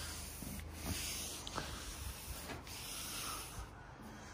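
A Scotch-Brite abrasive pad scrubbing a painted car body panel in slow back-and-forth strokes, about one a second, scuffing the old paint to key it before respraying.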